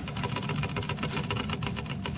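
Albino mouse drinking from the metal sipper tube of a water bottle, its licks making a fast, even run of small clicks.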